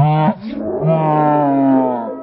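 A man's startled yell: a short cry falling in pitch, then a long held, low-pitched yell lasting about a second.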